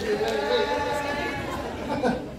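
Indistinct chatter: several voices talking and calling out at once, with no clear words.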